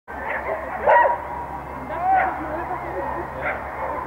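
Dogs barking and yipping over a background of people's chatter; the loudest bark comes about a second in, with more around two and three and a half seconds in.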